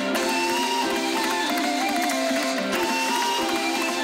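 Kazakh folk ensemble playing live: plucked dombras and other traditional strings, with a melody line that glides and turns above them.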